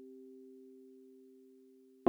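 A faint, soft sustained tone of a few pure pitches, fading slowly.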